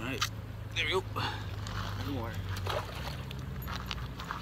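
A man's voice talking briefly and indistinctly in short bits, over a low steady hum that fades about three seconds in.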